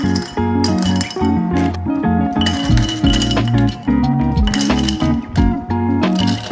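Ice cubes dropped into a glass mason jar, clinking against the glass and each other many times, over background music.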